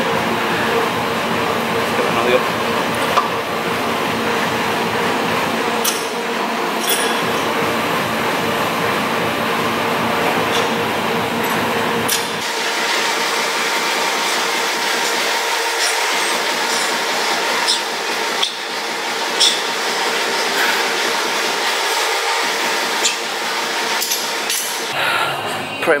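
Gym ambience: indistinct voices and faint music over a steady hum, with occasional sharp metallic clinks.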